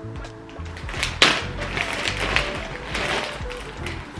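Background music with a steady low beat, over a clear plastic zip bag crinkling as it is handled and opened, with a sharp crackle about a second in.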